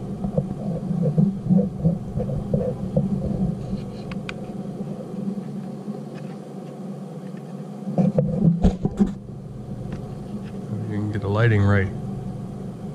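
Steady low hum under handling noise from the camera and the borescope being held, with a few sharp knocks about eight seconds in and a brief murmured voice near the end.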